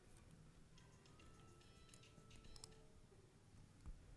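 Near silence: room tone, with a few faint clicks and a faint thin tone that holds for about a second and a half early in the quiet.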